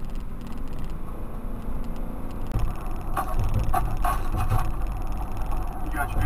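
Road and engine noise of a moving car heard inside its cabin through a dashboard camera's microphone: a steady low rumble that changes character about two and a half seconds in.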